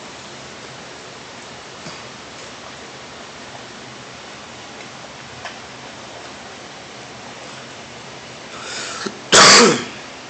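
Steady low background hiss, then near the end one loud, short cough.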